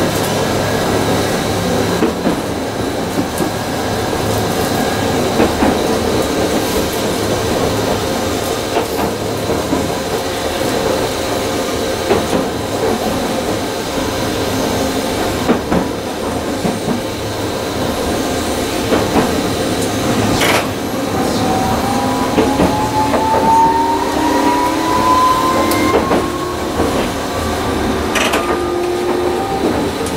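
Tokyu Setagaya Line 300-series tram running along the track, heard from inside the cab: steady wheel-on-rail rumble with a few sharp clicks. About two-thirds of the way through, a whine from the traction motors begins and climbs steadily in pitch as the car picks up speed.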